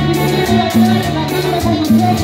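Live Latin dance-band music with a bass line and a steady beat, the beat played on a hybrid electronic drum kit.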